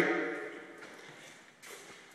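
The last of a man's voice dies away into quiet shop room tone, with a brief soft scuff about one and a half seconds in.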